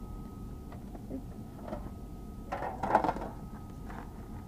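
Quiet handling of a plastic mixing bowl, metal spoon and aluminium foil baking pans: a few faint clicks, then a short rustling clatter about three seconds in. Under it run a steady low hum and a faint steady high whine.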